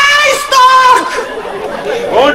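A high-pitched voice calling out in two long, drawn-out notes in the first second or so, amplified through a stage sound system, then dropping to quieter talk.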